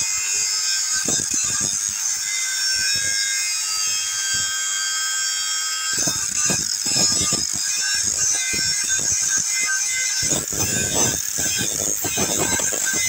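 Angle grinder with a cut-off disc running at speed and cutting into a steel chassis rail: a steady high whine over rough, uneven grinding noise that becomes heavier about halfway through.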